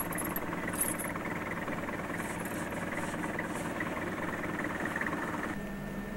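Car engine idling steadily, with a few faint metallic clinks from snow chains being fitted to a tyre. Near the end it cuts to quieter room tone.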